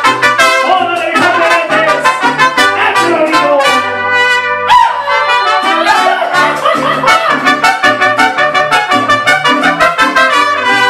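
A mariachi band plays an instrumental introduction: two trumpets carry the melody in harmony over strummed guitar and a guitarrón bass line. About four seconds in, the trumpets hold a long chord for about a second, then the strummed rhythm picks up again.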